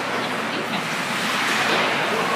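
Steady wash of indoor ice-rink noise during a hockey game: players skating on the ice and spectators in the stands.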